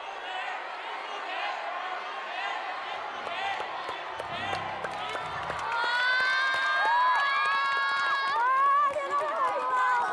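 A crowd cheering and screaming, full of short high-pitched shrieks; about six seconds in it grows louder into longer held cries and excited exclamations.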